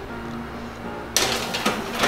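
Metal baking pan pushed onto an oven's wire rack: a short scraping clatter about a second in, with a click just after. Background music plays underneath.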